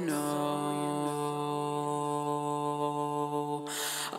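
Song playback with a sung vocal over held backing vocal harmonies generated from the lead vocal by Reason's Neptune pitch adjuster and vocal synthesizer, sounding as a steady sustained vocal chord. A short hiss comes near the end.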